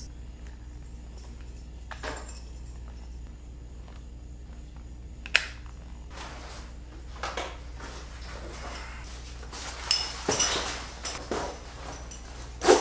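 Quiet handling noise as the small rubber holder of a paracord phone tether is stretched around a phone in its case: a few scattered light clicks and rustles, then a short cluster of knocks and shuffles near the end, over a steady low hum.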